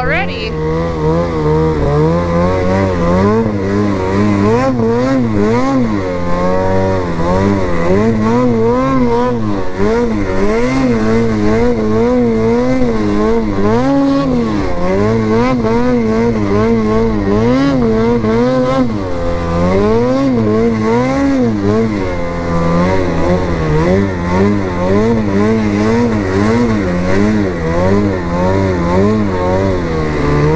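Lynx Boondocker mountain snowmobile's two-stroke engine, heard from the rider's seat while riding through deep powder. The revs rise and fall every second or two as the throttle is worked.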